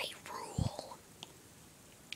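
A faint, whispery voice close to the microphone, with a short low thud from the phone being handled about half a second in, then quiet with a few small clicks.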